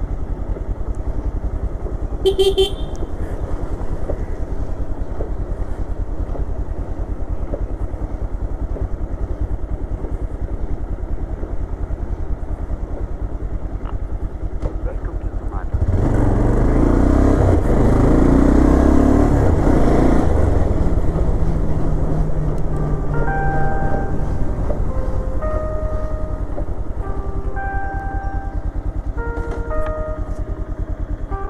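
A Bajaj Pulsar 220F's single-cylinder engine running steadily as the motorcycle rides at low speed. It gets louder, with more rushing noise, for several seconds from about the middle of the stretch, as the bike picks up speed.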